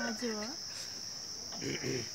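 Steady high-pitched insect trill running throughout. A brief soft voice sounds at the start and again near the end.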